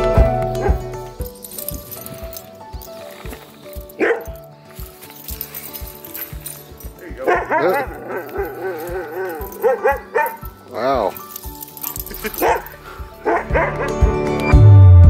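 Siberian huskies vocalizing in play. A run of wavering, rising-and-falling yowls comes from about seven to eleven seconds in, with short yips about four seconds in and near the end, over background music.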